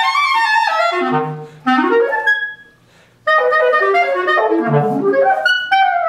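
Solo B-flat clarinet playing fast runs of notes that leap and sweep up and down over a wide range. About two and a half seconds in the playing breaks off for under a second, then the fast passage starts again.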